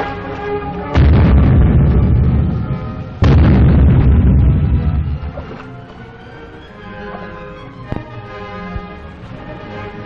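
Newsreel music score with two heavy booms of naval gunfire, about one and three seconds in, each with a deep rumble that fades over a second or two, from a submarine's deck gun firing on a surface target.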